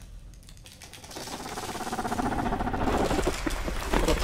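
Rapid, dense clicking with a drone beneath, starting quiet and swelling steadily louder from about a second in.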